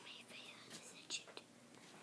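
Faint, soft rubbing of a paper blending stump stroked lightly over sketchbook paper to blend graphite shading.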